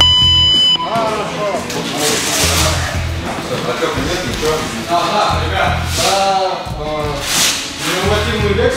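Gym round timer's electronic buzzer sounding one steady, high beep lasting under a second as its countdown reaches zero. Background music with a steady bass beat and a voice follows.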